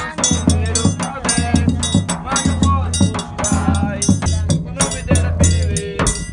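Live forró pé de serra percussion: a zabumba bass drum beaten in a steady rhythm, with a triangle ringing over it.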